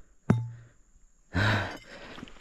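A man's breath: a loud sighing exhale about one and a half seconds in, one of a series of heavy breaths. It follows a short knock with a brief low hum near the start.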